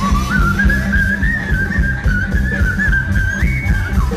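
Live band playing an upbeat dance tune, amplified through a PA: a high, wavering melody line held over bass and a steady drum beat, the melody stepping up in pitch near the end.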